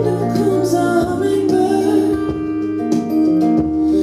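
Live band playing a mellow song: plucked guitar and held low notes under a wavering melody line, with a few light percussive ticks.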